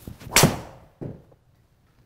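Driver swing whooshing down and striking a Callaway Chrome Soft X LS golf ball with a sharp impact about half a second in. About a second in, the ball hits the simulator's impact screen with a duller knock.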